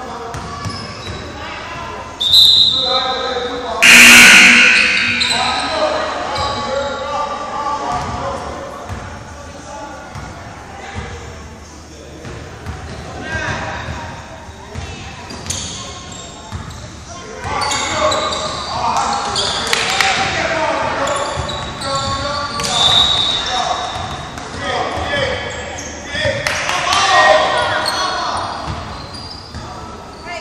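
A basketball dribbled and bouncing on a hardwood gym floor during a game, echoing in a large hall. There is a loud burst about four seconds in.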